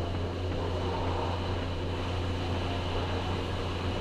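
Steady low machine hum with an even hiss.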